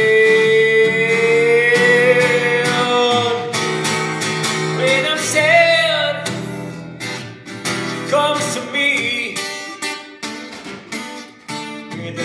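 A man's voice holding a long sung note, then a few brief wordless phrases, over a strummed twelve-string acoustic guitar. The playing grows sparser and quieter in the second half.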